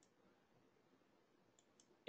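Near silence, with a few very faint clicks at the start and near the end.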